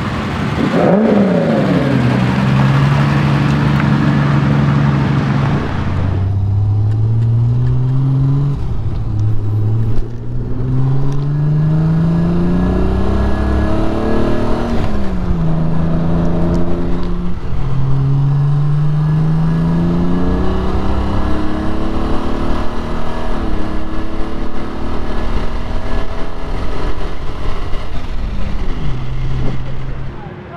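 Triumph TR6 straight-six engine heard from inside the car, accelerating through the gears: the engine note climbs, drops back at each change and climbs again, several times over. In the first few seconds a car engine's pitch falls away and settles to a steady run.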